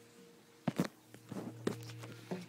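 A few footsteps and knocks close to the microphone, the loudest pair about two-thirds of a second in, over a steady low electrical hum.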